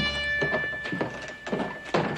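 Footsteps on a wooden boardwalk: a few irregular dull knocks, the sharpest and loudest just before the end. A held music note fades out about a second in.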